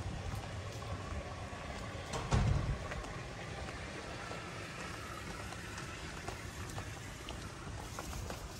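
Steady outdoor hiss with wind buffeting the microphone, swelling in a stronger gust about two and a half seconds in, and a few light footstep clicks as the camera operator walks the paved path.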